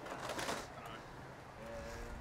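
Quiet outdoor background with a faint, low, steady bird call, a cooing note, starting about a second and a half in.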